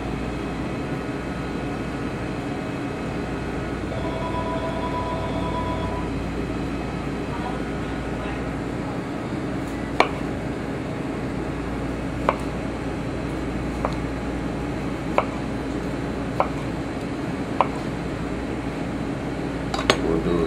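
Kitchen knife slicing heirloom tomatoes and knocking on the cutting board: six sharp knocks a little over a second apart in the second half, over a steady background hum.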